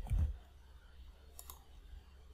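A few faint, sharp computer clicks, a pair about a second and a half in and another near the end, from a keyboard and mouse being used at a desk, over a low steady hum. A short low thump comes at the very start.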